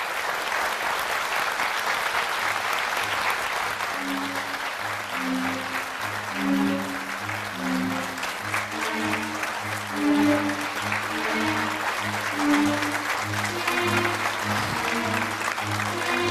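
Studio audience applauding, with upbeat show music coming in about four seconds in, carried by a steady bass beat of about two a second.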